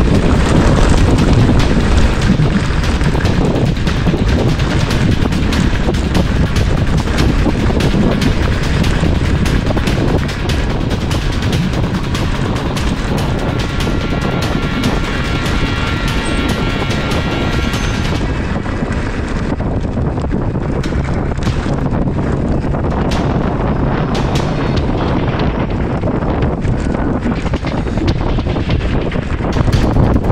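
Mountain bike rattling and clattering over a rough, stony track at speed, a dense run of knocks and bumps, with heavy wind buffeting on the action camera's microphone.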